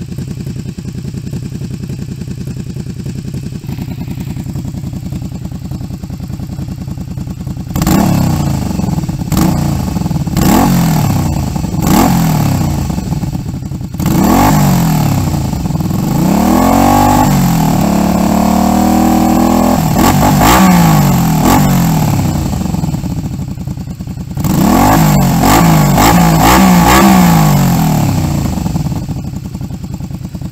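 Honda VTZ250's 250 cc V-twin engine idling steadily, then blipped several times from about eight seconds in. It is held at high revs for a few seconds in the middle, revved in quick bursts again, and settles back to idle near the end.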